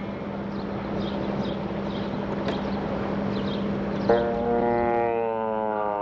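A steady outdoor background hiss with faint high chirps. About four seconds in, a long horn-like tone starts abruptly and slowly slides down in pitch.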